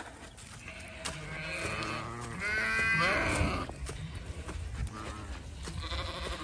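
Zwartbles ewes bleating: several overlapping calls, the loudest a high, wavering bleat about halfway through.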